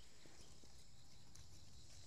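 Faint, steady high-pitched insect chirring in the background, with a low rumble and a couple of faint ticks from a plant stem being handled.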